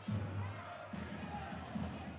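Faint game sound of a rink hockey match in a large hall: skate wheels rolling on the rink floor with a few light knocks of stick on ball.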